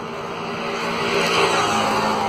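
Road traffic noise: a passing vehicle's engine and tyres, swelling to its loudest about a second and a half in.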